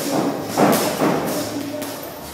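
Gloved boxing punches landing during sparring: a few dull thuds, the loudest a little over half a second in.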